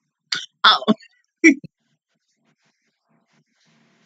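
A woman's short wordless vocal sounds: three quick bursts in the first two seconds.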